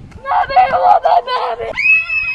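Children's loud yelling and screaming in short choppy bursts, ending in one shrill, high-pitched scream that rises sharply and holds.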